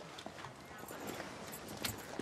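Footsteps on a hard floor with a faint murmur of voices behind them.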